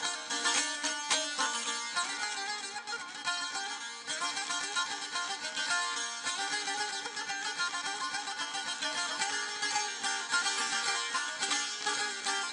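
Azerbaijani ashiq saz played alone in an instrumental passage of a folk song: rapid, continuous strumming and plucking of the long-necked lute.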